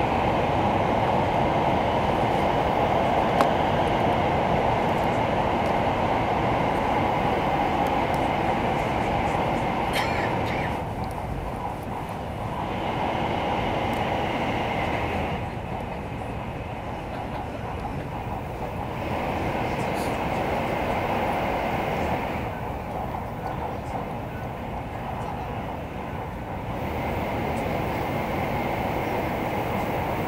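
Cabin running noise of a Taiwan High Speed Rail 700T electric train at speed: a steady rumble and rush heard from inside the passenger car. The level drops several times for a few seconds at a time and then rises again.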